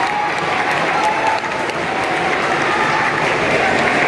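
An audience applauding, with a few voices faintly heard under the clapping.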